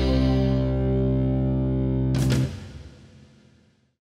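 Closing music ending on a long held chord, which breaks off with a short crash a little over two seconds in and fades out to silence.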